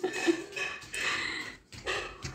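A young boy's excited, wordless vocal noises: breathy, growl-like sounds without words, a short pause, then another brief sound near the end.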